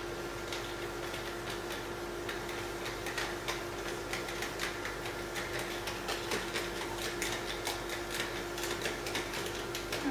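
Whiteboard eraser wiping marker off a whiteboard in quick back-and-forth strokes, a dense run of short scratchy rubs, over a steady low hum.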